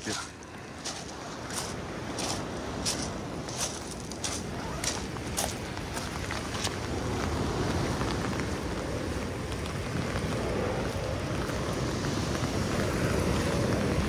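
Footsteps crunching on wet beach pebbles, about one and a half steps a second, over the first half. Then a steady rushing of wind and surf, with wind on the microphone, grows louder.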